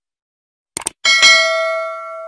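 Subscribe-button sound effect: a quick double click, then a bright bell ding about a second in that rings on and fades away.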